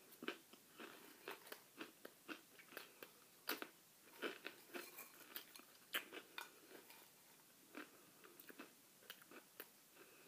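A person chewing crackers: faint, crisp crunches in an irregular run, thinning out in the last few seconds.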